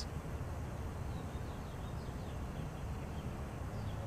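Outdoor ambience: a steady low background rumble with a few faint, short bird chirps.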